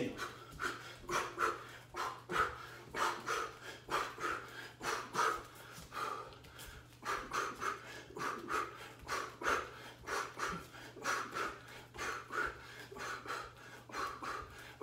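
A man exhaling sharply with each punch while shadowboxing a fast combination: a quick, even rhythm of short forceful breaths, about two to three a second.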